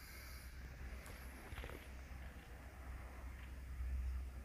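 Quiet outdoor ambience: a low, steady rumble of wind on the microphone, growing a little louder near the end, with a faint, high, wavering bird call about a second in.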